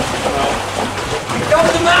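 People talking and exclaiming, with voices rising near the end, over a steady background of rushing noise.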